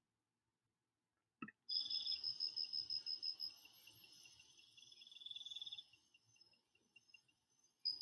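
Recorded cricket-chirping sound effect: a faint, fast pulsing high trill that starts after a short click about a second and a half in. It thins out midway, with a lower-pitched trill around five seconds in, and the high trill comes back near the end.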